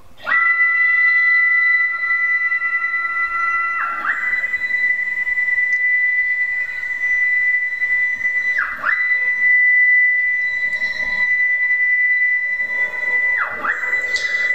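Stepper motors of a Langmuir CrossFire CNC plasma table driving the gantry and torch carriage through its break-in program. A loud, steady, high whine starts just after the beginning and dips briefly in pitch three times, about 4, 9 and 13.5 seconds in, as each move slows and reverses.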